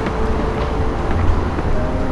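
Outdoor city ambience: a steady low rumble of distant traffic, with a few faint thin tones and small clicks over it.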